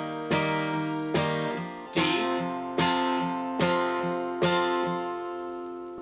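Acoustic guitar capoed at the third fret, played as a C chord and then changing to a D chord about two seconds in. The chord strokes come steadily, a little under a second apart, and the last one is left ringing.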